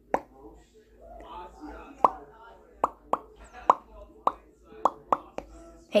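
A series of about ten short, sharp taps at uneven intervals, each with a brief pitched pop: a cap tapping repeatedly.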